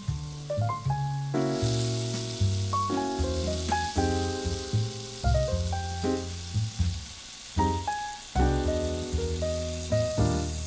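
Food frying in a hot pan, an even sizzle that starts about a second and a half in. Keyboard music with held and repeated notes plays throughout and is the louder sound.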